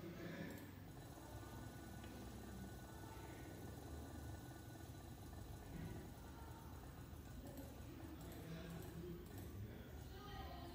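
Quiet room tone: a faint, steady low hum with soft, indistinct background noise.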